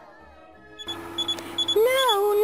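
Electronic beeping sound effect: short, high, unevenly spaced beeps over a steady low tone, starting suddenly about a second in as the music fades out. Near the end a wavering, siren-like wail joins in.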